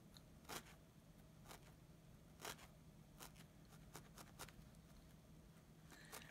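Faint, irregular soft pokes of a felting needle stabbing through wool, about one a second, over a low steady hum.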